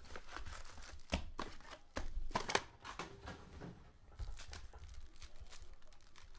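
Cardboard trading-card hobby box handled and emptied, with its foil card packs sliding out and being gathered into a stack: irregular clicks, taps and crinkles, with a few louder knocks in the first half.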